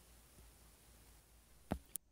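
Near silence: room tone, broken by one short knock near the end.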